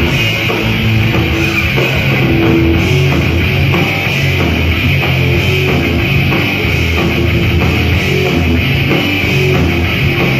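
Crossover thrash band playing live: distorted electric guitars, bass guitar and drum kit, loud and continuous, heard from within the crowd in a club.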